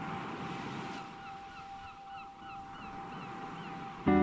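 Faint run of short, quick chirping calls, about three a second, over an even hiss and a constant high tone.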